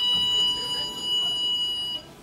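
Lift car's electronic buzzer sounding one steady high-pitched tone for about two seconds, then cutting off suddenly.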